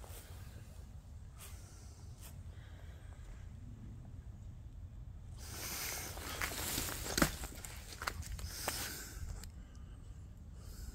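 Footsteps crunching and rustling through dry fallen leaves, getting louder about halfway in and easing off near the end, with a few sharper clicks among them.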